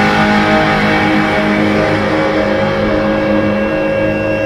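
Music soundtrack of electric guitar holding long sustained chords.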